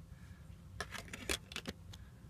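A handful of light plastic clicks and taps from a DVD jewel case and its disc being handled, over a faint room hum.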